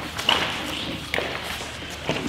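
Sheets of paper rustling as copies are handled and passed across a table, with two short knocks, about a quarter second in and just over a second in.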